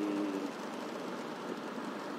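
Steady engine and road noise of a vehicle moving along a city street, with no distinct events.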